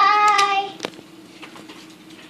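A young child yelling one long held note, followed shortly after it ends by a single sharp slap.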